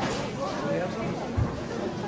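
Chatter of many shoppers' voices overlapping, with one short low thump about one and a half seconds in.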